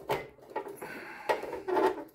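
Handling noise from a Tandon full-height floppy drive being worked loose in an IBM 5150 PC's metal drive bay: several sharp knocks and a short scrape about a second in.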